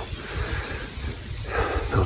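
Wind buffeting a close handheld microphone outdoors: an uneven low rumble. A man's whisper begins faintly near the end.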